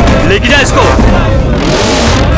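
Dramatic trailer soundtrack: dense, bass-heavy music with a few short gliding pitched sounds about half a second in, and a whoosh that swells toward the end as a transition effect.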